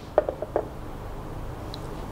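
A quick run of four light clicks and knocks in the first half second as a small plastic figurine is handled and set on a scanner turntable, followed by a steady low hum.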